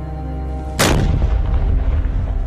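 Background music, then about a second in a single sharp explosion followed by a long low rumble.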